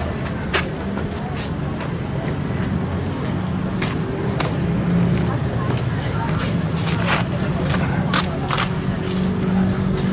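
Outdoor street ambience: traffic running steadily, with people talking in the background and scattered short clicks.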